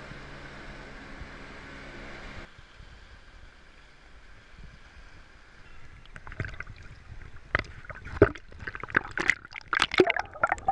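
A steady mechanical drone that cuts off suddenly about two and a half seconds in, followed by water lapping and sloshing against a camera held at the sea surface, in irregular splashes that grow louder near the end as the camera dips under.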